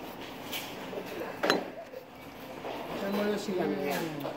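Background chatter of a busy dining room, with one sharp knock about a second and a half in, then a person's voice near the end.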